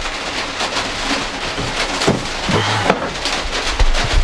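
Heavy rain drumming on a cargo van's metal body, with a few knocks and clatter from plastic bins being moved.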